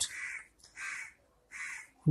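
A bird calling three times in the background, short calls about three quarters of a second apart.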